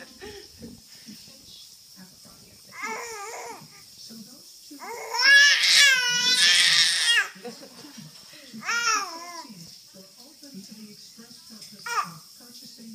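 A baby girl vocalising in high-pitched, crying babble: a short bout about three seconds in, a loud, longer one from about five to seven seconds, and a shorter one near nine seconds.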